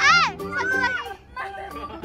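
A young girl's startled squeal, one short cry that rises and falls, with more of her voice just after, over steady background music.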